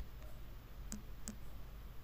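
Two faint, sharp clicks about a third of a second apart, about a second in, with a fainter click before them, over a low steady hum.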